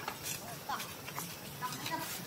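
Macaques giving several short, high-pitched rising calls: a few seconds of squeaks with faint rustling underneath.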